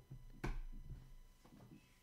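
A single short click about half a second in, over quiet room tone.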